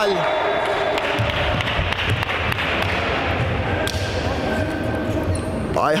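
Indistinct voices and chatter of players in a large sports hall during a stoppage in a basketball game, over a steady low rumble, with a few sharp knocks of a basketball bouncing on the wooden court.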